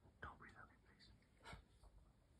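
Near silence with faint whispering and a brief soft click about a second and a half in.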